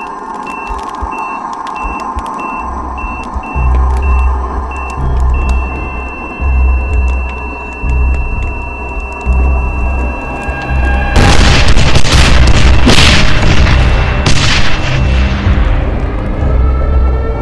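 Electronic bomb-timer beep, about two beeps a second and quickening, that turns into one steady tone; about eleven seconds in, a loud explosion cuts in and goes on for about four seconds. A suspense music score with a pulsing bass plays underneath throughout.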